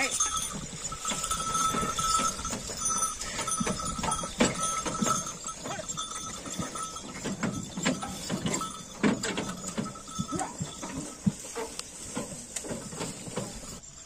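Ongole bullock cart loaded with sugarcane rolling over a rough field: irregular knocking and clattering of the cart and the bullocks' hooves. A steady high-pitched tone comes and goes through the first half.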